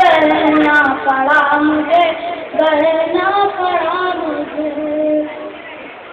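A boy sings lines of an Urdu ghazal in a melodic recitation, holding long, wavering notes. The singing stops about five and a half seconds in.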